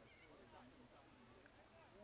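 Faint, distant voices of footballers and spectators calling out across an open ground, barely above near silence.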